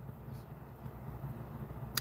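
Quiet room tone: a faint, steady low background hum with no distinct event.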